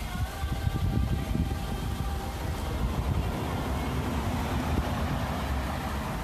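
Street sound: a steady low rumble of road traffic and wind on the phone's microphone, with a faint held tone through the first three seconds.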